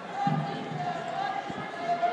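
Voices of a street march: a voice held on a slightly wavering note, with thumps about a quarter second in and again near the end.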